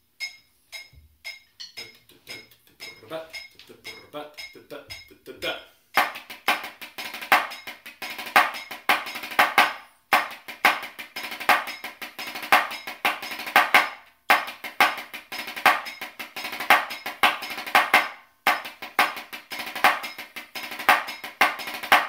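Metronome clicking at 115 beats a minute, joined about six seconds in by snare drumsticks playing a fast strathspey phrase exercise on a drum practice pad. The rapid strokes come in phrases of about four seconds with short breaks between.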